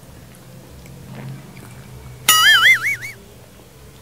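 A short comic sound effect: a high warbling tone that wobbles up and down in pitch for just under a second, starting a little past halfway, over faint room sound.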